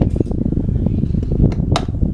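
Air from an oscillating desk fan blowing straight onto the microphone at close range: a loud, rough, low buffeting rumble. Two sharp clicks come near the end.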